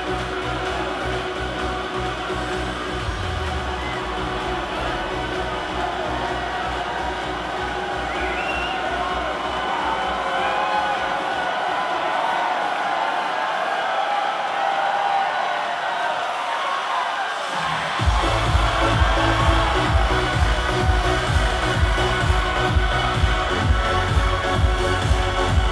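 Electronic dance music played loud over a cheering club crowd. The bass and beat fade out into a breakdown around the middle while the crowd whoops and cheers, then the full beat comes suddenly back in about six seconds before the end, as the drop.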